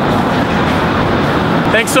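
Steady street traffic noise on a busy city street, an even rushing haze, with a man's voice coming in near the end.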